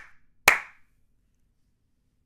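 A sharp hand clap about half a second in, with the fading tail of an earlier clap at the start, each ringing briefly.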